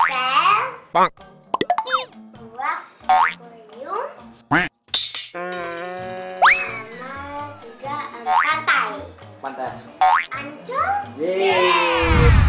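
Children talking in Indonesian over light background music, with edited-in cartoon sound effects: quick rising boing glides and a short run of clicks, then a falling swoop near the end.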